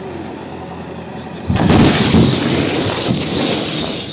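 A sudden, very loud explosion about a second and a half in, in the rubble of a collapsed factory, followed by a loud rumble that slowly dies down. Before it, the steady running of backhoe loader diesel engines.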